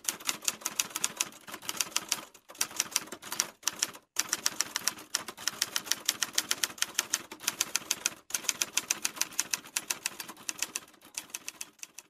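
Typewriter sound effect: rapid runs of mechanical key clacks, broken by a few short pauses.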